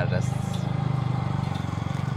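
Motor-driven sugarcane juice crusher running: a steady low drone with a fast, even pulsing.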